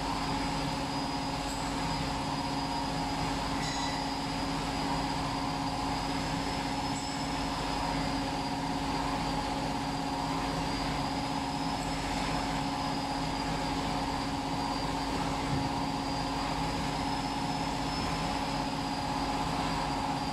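Steady machine hum from an idling CO2 laser engraving machine and its fans, with a constant low tone and a thin high whine that wavers slightly.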